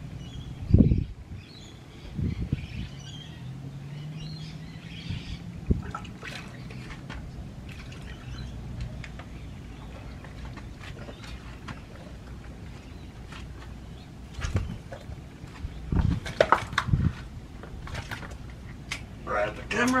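Handling noise as a fish is landed by hand on light spinning gear: a few dull thumps and knocks, over a steady low wind rumble on the microphone, with faint splashing of water. A faint low drone runs for several seconds early on and drops slightly in pitch.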